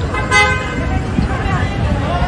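A single short car horn toot about half a second in, over people talking and a low traffic rumble.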